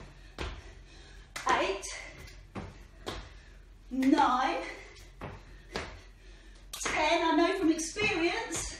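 A woman doing burpees on a tiled floor: a breathy, voiced exhalation with each rep, about every three seconds, between short thuds and taps of hands and feet landing on the tiles.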